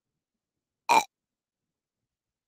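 One brief creature-like vocal sound from Baby Yoda (Grogu) about a second in, with silence around it.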